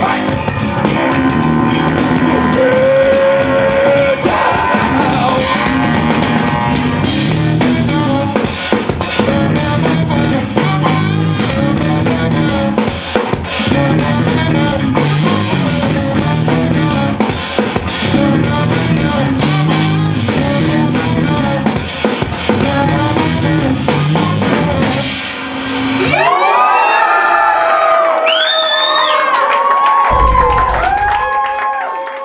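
A live funk band of two bass guitars, tenor saxophone and drums playing, the basses locked in a repeating riff under busy drums. About four seconds before the end the basses and drums stop and a single line with bending pitches carries on alone.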